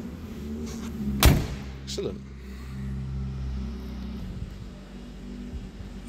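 A car door, the 1960 Wolseley 1500's, shut with one sharp thud about a second in, followed by a smaller knock, over a steady low hum.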